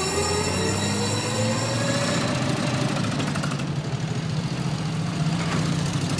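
Old motor vehicle engine running steadily, its pitch rising slowly over the first couple of seconds and then holding.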